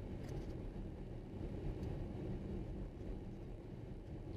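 Interior road noise of a car driving on an unpaved dirt road: a steady low rumble of tyres and engine, with a faint even hum.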